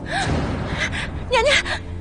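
A young woman gasping and whimpering in fear, with short wavering cries about one and a half seconds in, over a low sustained music bed.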